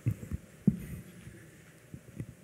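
Dull low thumps picked up by a lectern's gooseneck microphone as it is handled and adjusted: three bumps in the first second, the loudest just before the one-second mark, then only faint room hum.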